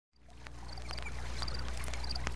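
Vinyl record playing back as it fades in: surface crackle and scattered clicks over a steady low hum, with faint short high chirps repeating in twos and threes.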